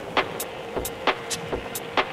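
Sparse intro of an electronic breaks/UK garage track: a broken drum pattern of hat and snare-like hits over a hissy, static-textured bed with a faint held tone.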